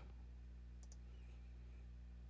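Near silence: a low, steady hum of room tone, with one faint click a little under a second in.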